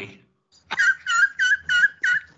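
High-pitched, squealing laughter: a run of about five short, whistle-like squeals, roughly three a second, starting a little under a second in.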